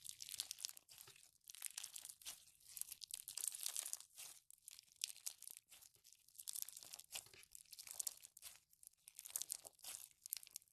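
Clear slime packed with clear beads being squeezed and pressed between fingers, giving quiet, dense crackling and popping that comes in waves.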